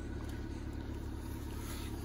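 A steady, low, even engine rumble, as of a vehicle idling.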